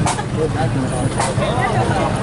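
Indistinct chatter from nearby onlookers over a steady low rumble.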